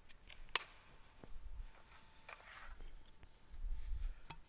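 Quiet room with a few light clicks and soft handling noises, with a low rumble of movement near the end.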